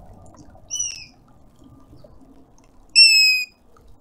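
African grey hornbill giving two plaintive whistles, each sliding slightly down in pitch; the first is short, the second, about three seconds in, is longer and louder.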